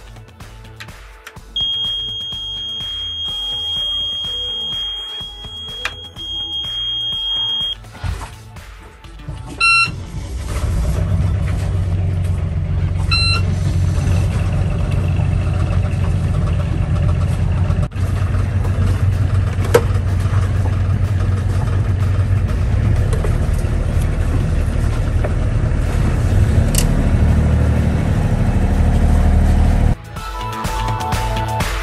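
Battery-management-system (BMS) alarm on a LiFePO4 house battery bank sounding a steady high-pitched tone for about six seconds, then two short beeps a few seconds apart, warning that the bank is not charging. From about ten seconds in a louder, steady low sound takes over.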